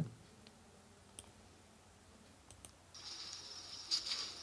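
A few faint mouse clicks in a near-silent stretch, then about three seconds in a steady high-pitched hiss starts as an outdoor video clip begins playing back.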